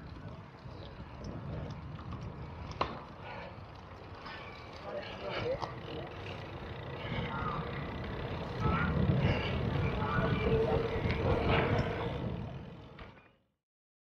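Outdoor background noise with faint, indistinct voices and a sharp click about three seconds in, growing louder in the second half before cutting off abruptly near the end.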